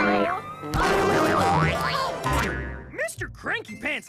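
Cartoon boing sound effect as a sticky ball springs free, over playful background music; near the end comes a quick run of up-and-down pitch glides.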